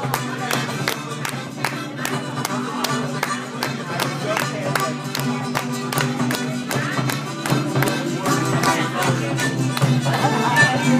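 Small Celtic folk band playing an Irish jig: acoustic guitar strummed in a steady, even beat under a melody played on harmonica.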